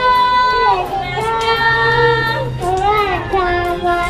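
A song: a high singing voice holding long notes that glide and waver from one pitch to the next.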